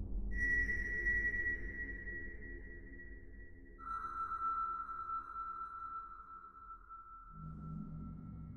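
Ambient electronic music from a Mutable Instruments modular synthesizer. Two high tones each start sharply and fade slowly, the second lower than the first, over a low drone that shifts near the end.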